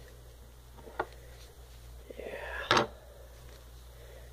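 Handling noises as a doll's hair and hair net are worked by hand: a faint click about a second in, then a louder rustle ending in a sharp click a little before three seconds in.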